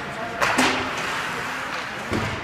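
Ice hockey game on the rink: a sharp hit about half a second in, trailing into a short scraping hiss, over the steady murmur of spectators in the rink.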